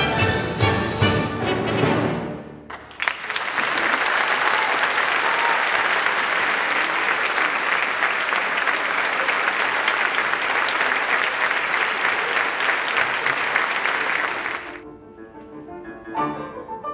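Symphony orchestra with brass closing on a loud final chord, followed by a concert-hall audience applauding steadily for about twelve seconds until the applause cuts off suddenly.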